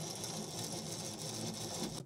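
Overhead manual trim crank and chain drive of a Pilatus PC-6 Porter being wound by hand, running the tailplane trim to full down with a steady mechanical whir.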